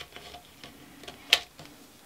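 Quiet pause with one short, sharp click a little over a second in: a small item being handled on a table.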